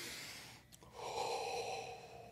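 A person breathing out hard: a short breathy exhale at the start, then a longer, louder breath about a second in.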